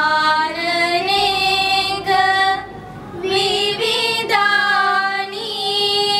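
A group of girls singing together, a slow melody of long held notes with a short pause for breath about halfway through.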